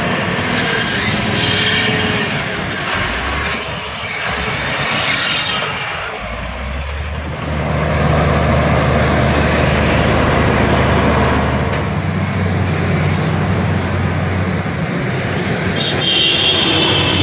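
Diesel engines of earthmoving machines working, an excavator and a LiuGong B160C crawler dozer. From about six seconds in, a steady low engine drone comes up close, loudest for the next several seconds, then eases off.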